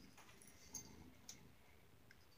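Near silence: room tone with a couple of faint short ticks.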